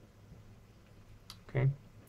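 A single faint click about a second in, just before a man says "okay", in an otherwise quiet room.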